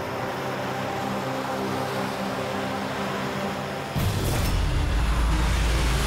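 Cars driving up with engines running over a background music drone; about four seconds in, a loud low rumble sets in suddenly.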